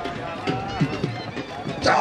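A man's voice commentating over the event's sound, with scattered sharp knocks underneath. A louder voice cuts in near the end.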